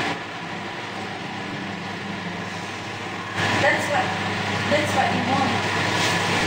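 Steady whirring hum of several electric room fans, carrying a low electrical hum; a voice starts talking over it about halfway through.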